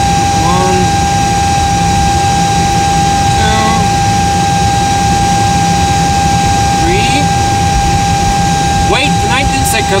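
Loud, steady drone of aircraft machinery with a constant high whine, heard inside the aircraft's avionics compartment. Brief voices come through a few times.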